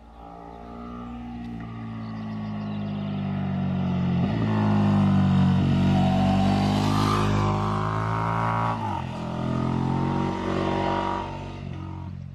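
KTM 1290 Super Duke GT's V-twin engine under acceleration as the motorcycle approaches and passes. It grows louder to a peak around the middle, with two brief gear changes, about four and nine seconds in, then falls away near the end.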